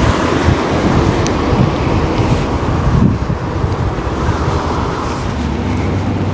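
Wind buffeting the microphone, a loud, rough rumbling noise, with a car driving past on the street.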